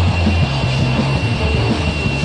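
Live rock band playing: a bass line that moves in steps under a long held high tone.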